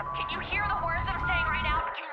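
A man's voice with a thin, phone-line quality repeating "I'm here, I'm here, I'm here" over trailer music: a low rumble with a steady high tone.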